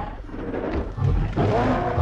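A film Allosaurus roaring: one long pitched roar that swells up about three-quarters of a second in and carries on to the end, over a low rumble.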